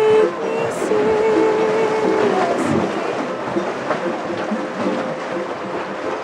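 A woman singing long held notes to a strummed ukulele. About two seconds in her voice drops back and the strummed ukulele carries on, with only faint sung notes above it.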